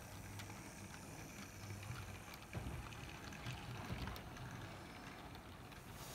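Faint, steady hum of a model GWR 61XX tank locomotive's electric motor, with a few light clicks from its wheels on the track, as it pulls a short freight train along the layout.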